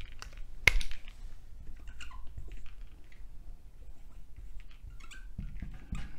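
Felt-tip marker squeaking and scratching in short strokes on a whiteboard as words are written, with one sharp tap against the board a little under a second in.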